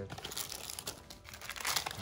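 Thin clear plastic accessory bags crinkling as they are handled, in an irregular crackle that grows loudest near the end.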